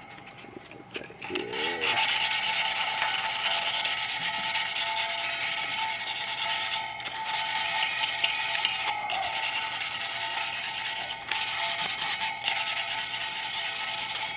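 Sandpaper scrubbed rapidly back and forth by hand along a steel spoke of a Ford Model A wire wheel, taking off old paint and rust that a citric acid soak has loosened. The sanding starts about a second and a half in and runs on steadily, with a few brief pauses.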